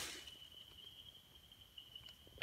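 Faint, steady, high-pitched insect trill over near silence.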